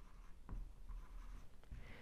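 Faint strokes of a marker pen on a whiteboard as words are written and then circled, with a slightly clearer stroke about half a second in.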